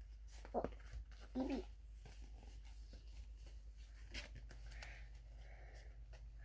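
A picture book being handled: faint taps and rustles as its cover and pages are turned. Two brief murmured vocal sounds come about half a second and a second and a half in.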